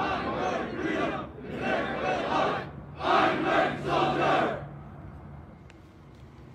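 A formation of soldiers shouting together in unison, three loud group shouts in the first four and a half seconds, then fading away.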